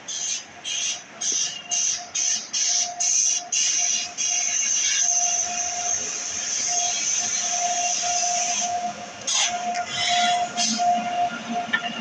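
Passenger train hauled by a WAP7 electric locomotive passing slowly. Regular clicks, about three a second, give way after about four seconds to a steady high squeal that stops near the end.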